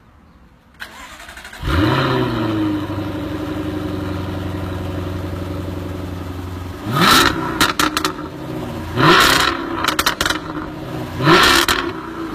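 Jaguar F-Type R's supercharged V8 cranking briefly and firing with a flare of revs, then settling to a steady idle. It is then revved three times in quick blips, with a few sharp exhaust pops after the first two.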